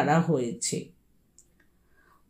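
A voice narrating in Bengali, trailing off about a second in, then a pause of near silence with one faint click.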